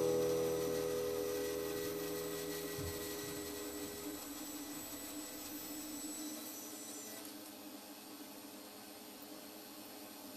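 The last guitar chord of the background music ringing out and fading away over the first few seconds, leaving faint hiss.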